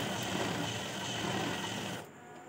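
Sewing machine running steadily, stitching through layers of cotton fabric, then cutting off abruptly.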